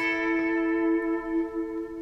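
Electric guitar double stop: two notes struck together and left ringing, held evenly with little decay.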